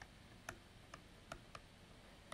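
Faint, scattered ticks of a stylus tip tapping and lifting on a tablet screen during handwriting, about four light clicks over two seconds.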